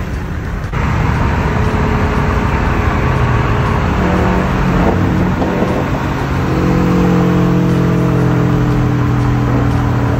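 Cars running at highway speed, heard from inside a car's cabin: steady road and engine noise, with an engine note that climbs from about four seconds in and then holds steady.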